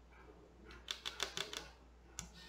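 Tarot card deck handled in the hand: a faint, quick run of soft clicks over about a second as the card edges are flicked and slid.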